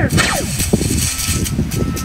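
Cartoon laser-tag shot sound effect: a long hissing zap that lasts nearly two seconds, opening with a brief falling tone.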